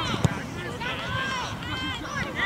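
Overlapping shouts and calls from players and sideline spectators at a junior rugby league game, several voices at once, with one sharp thump about a quarter second in.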